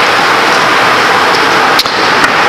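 Steady, loud hiss of background noise with no speech, with a single short click near the end.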